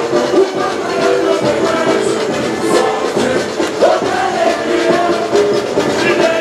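Live samba parade music: a sung samba melody carried over a dense, steady samba drum beat, with crowd voices mixed in.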